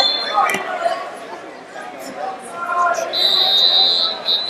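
Indistinct voices and chatter echoing around a large wrestling tournament hall. About three seconds in, a loud, shrill high tone sounds steadily for about a second.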